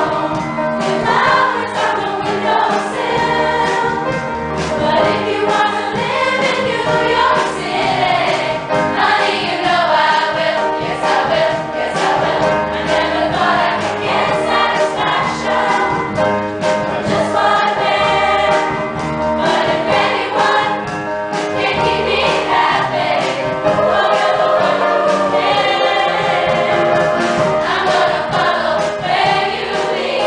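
A girls' school chorus singing together, many voices holding and moving through notes at once, without a break.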